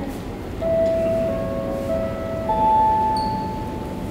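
Airport public-address chime: four ringing electronic notes that overlap as they sound, the last one higher and held longest. It is the attention signal that comes just before a PA announcement.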